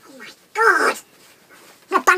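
A short pitched vocal whine or yelp about half a second in, bending up and down in pitch, with another vocal sound starting near the end.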